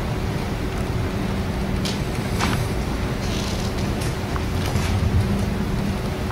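Steady low hum and rumble of room background noise, with a few faint clicks or rustles.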